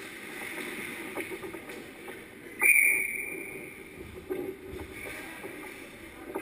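Ice skates scraping and hockey sticks clicking on the ice in front of the net, with one loud metallic clang about halfway through that rings briefly: the net frame carrying the goal camera being struck by a puck or stick.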